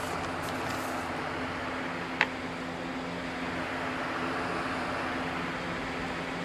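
Steady background hum and hiss, with one brief sharp sound about two seconds in.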